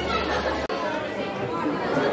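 Crowd chatter: many people talking at once in a large hall. A steady low hum under the voices cuts off abruptly about two-thirds of a second in.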